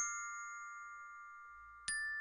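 Song intro played on bright bell-like tuned percussion in the manner of a glockenspiel. A chord struck at the start rings out and slowly fades for nearly two seconds, and the next note is struck just before the end.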